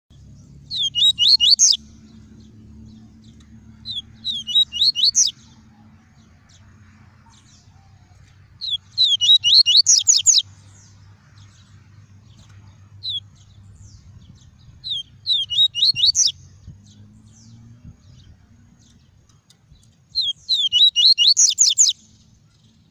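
Yellow-bellied seedeater (papa-capim) singing its 'tuí tuí' song: five short phrases of quick, high, rising notes, a few seconds apart, with a lone note between two of them.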